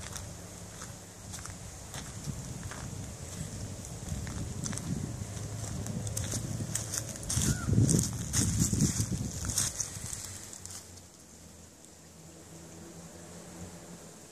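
Footsteps crunching and brushing through dry leaf litter and twigs, loudest about eight seconds in, over a low rumble on the microphone.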